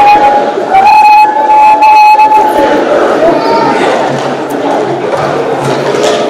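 A young performer's high voice held in long, loud cries: two drawn-out wails in the first two seconds or so, a shorter rising-and-falling one at about three seconds, then fainter noise from the hall.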